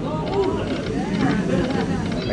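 Casino floor background: indistinct overlapping voices mixed with slot-machine electronic sounds and short high clicks during a spin.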